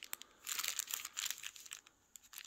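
Clear plastic bag of bicycle hub axles crinkling as fingers press and shift it, starting about half a second in and dying away near the end.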